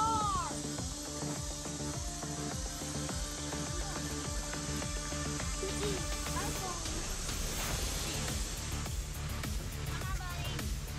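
Background music with steady bass tones, and a brief gliding vocal sound near the start.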